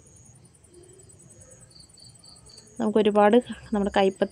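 Faint, short, high-pitched insect chirps over a low background, then a woman's voice starts speaking about three seconds in.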